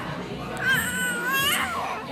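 A baby's loud, high-pitched, wavering squeal lasting about a second, starting about half a second in, over background restaurant chatter.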